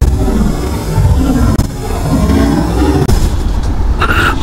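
Motorcycle engine running under a heavy low wind rumble on the rider's microphone as the bike moves through traffic. The level dips sharply for an instant twice.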